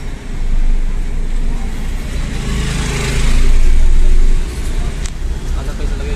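Car engine idling, heard from inside the cabin, with street traffic outside; a louder rush of noise swells about two and a half seconds in and drops away just after four seconds.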